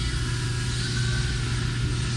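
A steady low hum, with a faint thin higher tone about a second in; no key clicks stand out.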